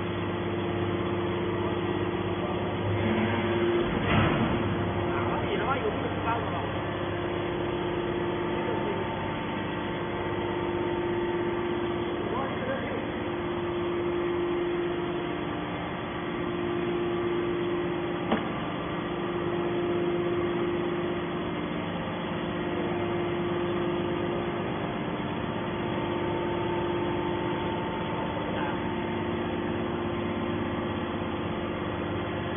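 Steady machine hum from a hydraulic scrap metal baler's power unit, with several tones that swell and fade every few seconds. A knock about four seconds in and a single sharp click a little past halfway.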